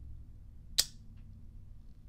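A single sharp metallic click from a Thorens Double Claw semi-automatic petrol lighter as its spring-loaded lid snaps open when the button is pressed, followed by a faint tick.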